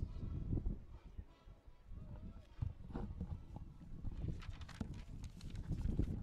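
Wind buffeting an outdoor microphone: an irregular, gusting low rumble with soft thumps, and faint distant voices now and then.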